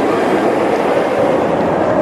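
B&M hyper coaster train running along its steel track, a loud steady rumble with no breaks.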